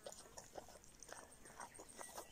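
Faint, irregular short crunches of a pig eating fallen almond leaves off the grass, nose to the ground.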